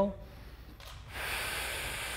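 A man's slow, deep breath in, a steady airy hiss that starts about a second in and is still going at the end.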